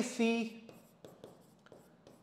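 A few spoken words, then faint scratching and tapping of a pen writing on an interactive display screen.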